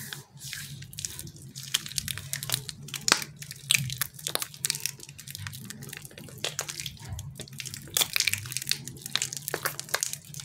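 Hands squeezing and rubbing a sticky white squishy filling between the palms and fingers, giving irregular wet crackles and sticky pops, over a low steady hum.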